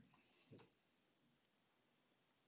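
Near silence: faint room tone with a single faint click about half a second in.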